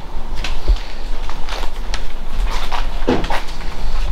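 Rear cargo door of a Ram ProMaster City van being handled and swung open: a series of short latch clicks and knocks over a steady low rumble.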